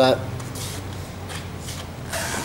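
Soft rustling and handling noise from a handheld camera being moved, over a faint low steady hum.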